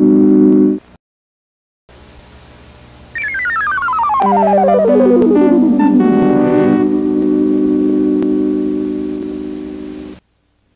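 Electronic synthesizer jingle of a PBS station ident. A held chord cuts off about a second in, and after a short pause a synthesizer tone glides steadily downward over about three seconds. Sustained chords come in beneath it and then fade out near the end.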